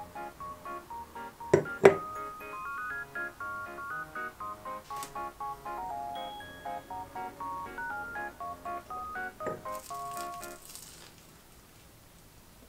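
Light background music of quick, short chiming notes that fades out near the end. Two sharp knocks come about two seconds in, another knock later, and then crisp crunching as toasted bread is bitten.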